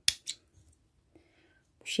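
Small scissors snipping through crochet thread: one sharp snip just after the start, then a fainter click. The thread is cut off at the end of a finished round of lace.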